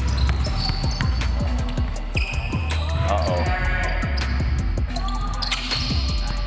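A basketball being dribbled on a hard gym floor, bouncing again and again, over background music with a heavy bass beat.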